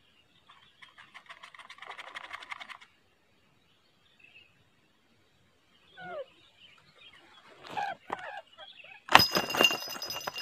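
Bird calls: a quick rattling trill about a second in and a short gliding call around six seconds. Near the end comes a sudden loud clatter with a ringing edge as the net-topped wooden quail trap springs shut.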